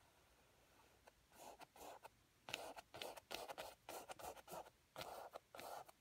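Faint brushing of a flat bristle brush scrubbing oil paint onto canvas: a run of short strokes, about three a second, starting about a second in.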